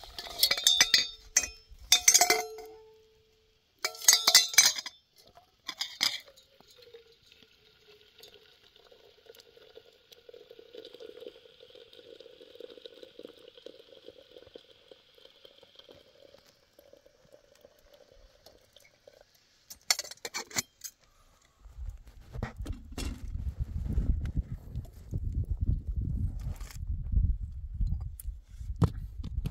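Metal kettle and teapot clinking several times, then hot water poured steadily from a kettle into a small metal teapot for about ten seconds, and a few more clinks around twenty seconds in. A low rumbling noise takes over for the last six seconds.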